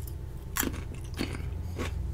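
A person chewing a mouthful of raw cucumber: three short, crisp crunches about half a second apart.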